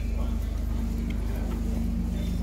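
Street ambience: a steady low motor hum holds one pitch throughout, under faint voices of passers-by.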